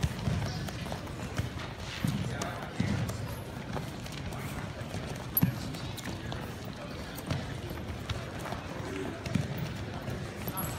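Wrestling shoes stamping and shuffling on a foam wrestling mat as wrestlers drive in with attack steps, with a few sharper thuds, over the hubbub of many voices in a large gym.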